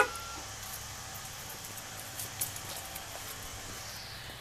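A single short horn chirp from the 2002 Dodge Caravan as it is locked with the key-fob remote, then a steady low hum.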